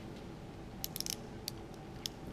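A few faint, sharp clicks close together about a second in, and one more shortly after: a metal pen being handled and set down on the desk beside the paper.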